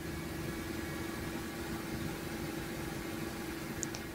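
A steady low hum over a constant hiss, unchanging throughout.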